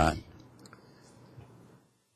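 The tail of a man's hesitant "uh" into a microphone, then quiet room tone with a few faint clicks. Near the end the sound drops out completely.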